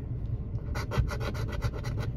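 A coin scraping the scratch-off coating from a paper lottery ticket in quick back-and-forth strokes. The strokes start under a second in and come about six or seven a second.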